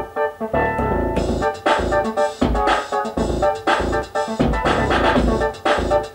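Electronic music: a drum-machine beat with a regular low bass-drum pulse, joined by hi-hats about a second in, under sustained synthesizer keyboard chords.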